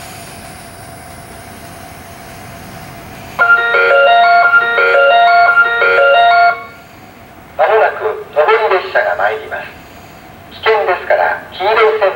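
Station platform train-approach chime: a short electronic melody of repeating notes plays loudly for about three seconds. About a second after it ends, a recorded Japanese platform announcement begins, telling passengers to stand back and wait.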